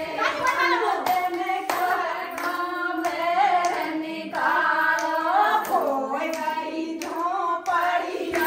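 Singing accompanied by hand clapping.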